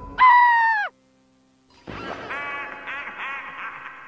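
Cartoon sound effects: a short, loud pitched cry that sags in pitch and drops away as it cuts off. After about a second of silence comes a quick run of repeated pitched calls, about three a second.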